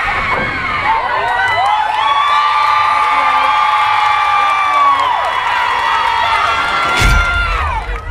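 Crowd cheering and screaming, with several high-pitched screams held for a few seconds at a time. A sharp bang comes about seven seconds in.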